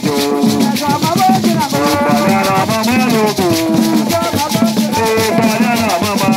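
Ewe Agbadza drumming and song: a group of voices singing in phrases over hand-played barrel drums and shaken gourd rattles, in a fast, steady rhythm.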